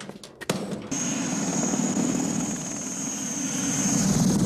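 Helicopter gunship flying: a steady high turbine whine over a dense rotor and engine rumble, coming in about a second in after a few sharp clicks.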